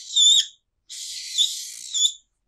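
Felt-tip marker squeaking and scratching across flip-chart paper as the digits 6 and 0 are written: a short stroke, then a longer one starting about a second in.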